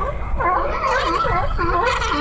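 A group of sea lions hauled out on a dock barking and growling, a run of repeated throaty calls that starts about half a second in.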